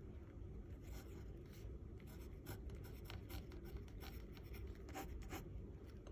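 Ballpoint pen writing a word on paper and underlining it twice: a run of faint scratching strokes.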